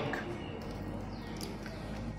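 Faint background music, with a light crack of an egg being broken into a glass bowl near the end.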